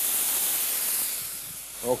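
Water sprinkled into a hot pan of frying masala hisses loudly all at once as it turns to steam, then slowly fades, deglazing the pan.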